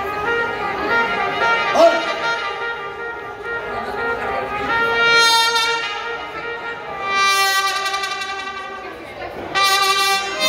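Live mariachi band playing an instrumental passage: trumpet and violins carry long held melody notes over guitar accompaniment, the phrases swelling and fading and growing louder near the end.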